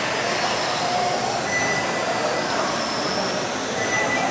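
1/12-scale electric RC pan cars with 17.5-turn brushless motors running laps on a carpet track: a steady whine of motors and gears over tyre noise, with faint high tones drifting up and down as the cars speed up and slow.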